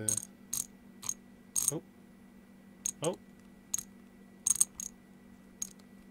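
Detent clicks of a CNC manual-pulse-generator handwheel (an incremental rotary encoder) turned slowly by hand: about a dozen irregular sharp clicks, some in quick runs of two or three, over a steady electrical hum.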